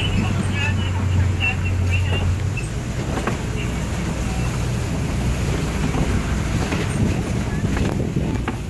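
Open-sided safari ride truck driving, a steady low engine and road rumble that is a little stronger in the first couple of seconds.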